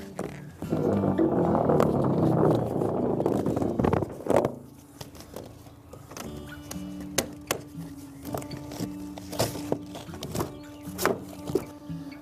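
Black corrugated plastic flex drain pipe being pulled out to length, a loud crinkly rasp of its ribs for about three seconds starting just under a second in. After it, background music with steady tones and scattered knocks.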